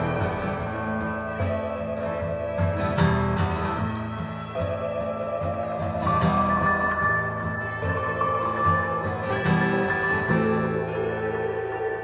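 Instrumental passage of a rock song: guitars over a beat of drum hits. The drums stop about ten seconds in, leaving sustained, ringing guitar tones.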